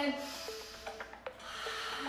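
A long, audible inhale, breathy and rasping, over faint background music, with a few light clicks.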